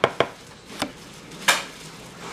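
A metal spoon knocked sharply against the Vitamix blender container four times at uneven intervals, shaking off scooped avocado.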